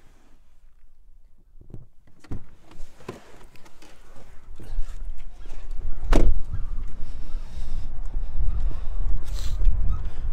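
Scattered clicks and knocks as someone gets out of a SEAT Ibiza three-door hatchback, then its driver's door shut with a single sharp thud about six seconds in. From about halfway through, wind rumbles on the microphone.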